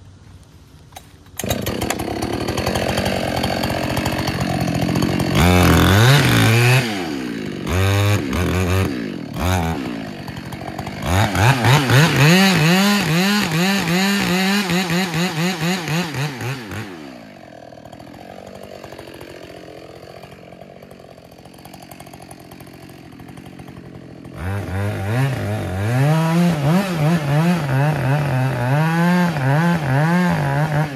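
Gas chainsaw throttling up from idle about a second and a half in, revving in short bursts, then cutting into the base of a poplar trunk with its engine speed rising and falling under load. It drops back to idle for several seconds, then cuts again near the end.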